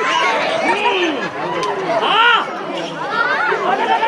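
A performer's loud theatrical voice declaiming, its pitch sweeping up and down in long arching swoops.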